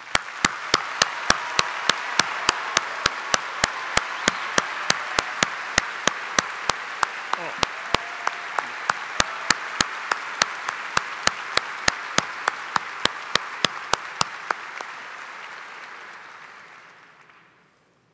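A large audience applauding, fading out near the end. Over it, sharp, evenly paced claps close to the microphone, about three a second, are louder than the crowd and stop a few seconds before the applause does.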